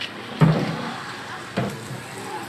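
Two dull thumps about a second apart, the first the louder, from goods being handled and set down.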